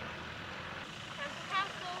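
A vehicle running at a distance over a steady outdoor background, with a faint high voice calling briefly in the second half.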